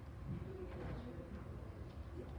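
Faint, indistinct low voices murmuring off-microphone over a steady low room rumble.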